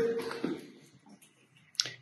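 A man's voice trails off at the start and fades out in an empty, echoing room. After a quiet stretch there is a single sharp click shortly before the end.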